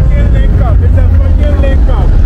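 Road noise from a car convoy on the move: a loud low rumble of engines and wind, with voices calling out over it.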